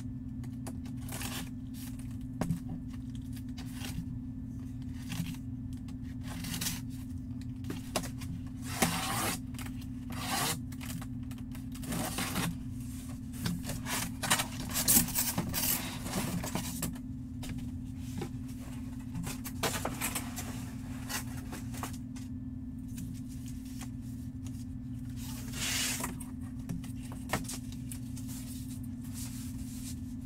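Cardboard packaging being handled: irregular scraping and rubbing as a large flat box is opened and its contents slid out, loudest about halfway through, over a steady low hum.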